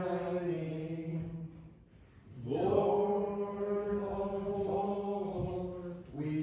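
Slow, chant-like hymn singing in long held notes. The phrase fades out about a second and a half in, and the next starts about two and a half seconds in with a note that slides up and is held.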